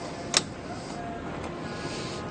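A single sharp click about a third of a second in, then faint steady background noise.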